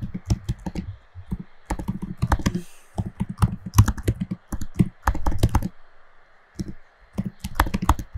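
Typing on a computer keyboard: quick bursts of key clicks, broken by a pause of about a second around six seconds in.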